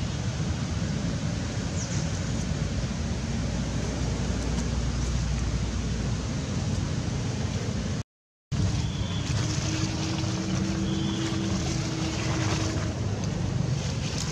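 Steady rushing outdoor background noise, heaviest in the low end, broken by a half-second of dead silence just past eight seconds in.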